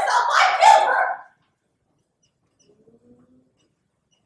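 A loud, pitched vocal outburst from a stage actor, a cry or yelp that PANN hears as bark-like, lasting about a second and cutting off sharply. After it the stage goes almost silent, with only a faint, brief low tone a little before the end.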